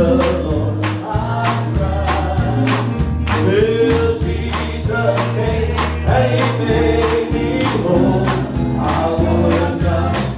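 Live gospel worship song: voices singing over a band with a steady beat and bass, hands clapping along.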